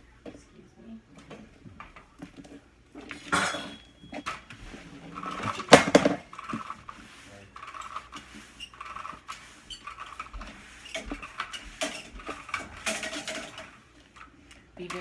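Flat mop being pushed back and forth over a vinyl floor, its head knocking and scraping in short strokes, with one sharp knock about six seconds in.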